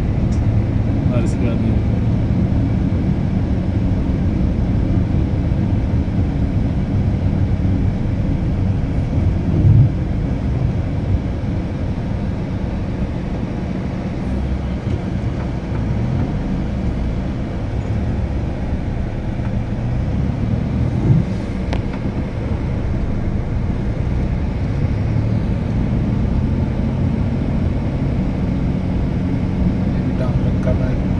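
Car engine and road noise heard from inside the cabin while driving, a steady low hum, with two brief thumps, one about ten seconds in and one about twenty-one seconds in.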